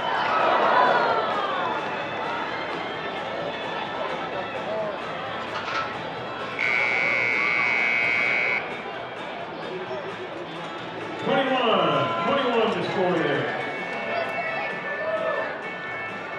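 Rodeo arena crowd cheering and whooping as the rider comes off the steer. About six and a half seconds in, a steady electronic buzzer sounds for about two seconds: the arena's timing buzzer. Crowd voices rise again a few seconds later.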